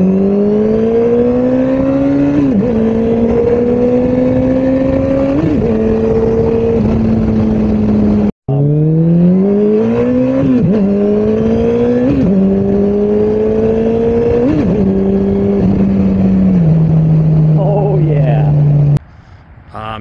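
Yamaha FJR1300's inline-four engine accelerating through the gears under wind noise. Its note climbs and drops back with each upshift, two shifts, a brief break, then three more. Near the end it settles to a steady lower note.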